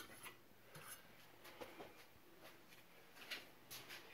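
Near silence: room tone with a few faint, scattered clicks and rubbing sounds of handling.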